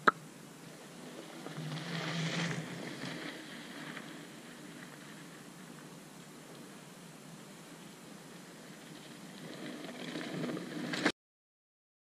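A sharp click at the start, then steady outdoor noise on a trail-side camera microphone. It swells near the end as a mountain bike comes down the dirt trail toward the camera, then cuts off suddenly.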